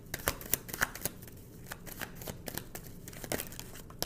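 A tarot deck being shuffled and handled: a run of light card clicks, closely spaced in the first second, then sparser, with one more click near the end.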